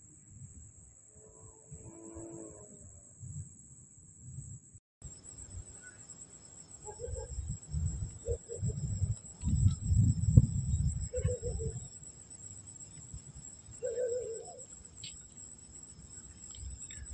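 Night ambience of a steady, high insect chorus, cut off for an instant about five seconds in and then resuming. Over it, gusts of wind rumble on the microphone, loudest around the middle, with a few short calls now and then.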